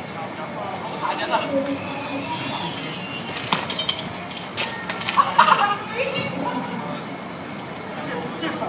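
Simulated training swords clashing in sparring: a quick run of sharp clacks about three and a half seconds in, and a few more about a second later. Voices talk in the background.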